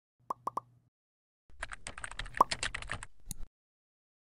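Animation sound effects: three quick pops, then rapid computer-keyboard typing lasting about a second and a half with a louder pop in the middle, ending in a single click.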